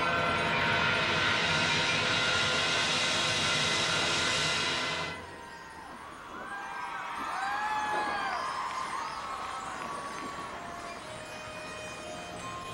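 Marching band holding a loud sustained chord under a cymbal wash that cuts off sharply about five seconds in. It is followed by softer swooping, sliding tones that rise and fall.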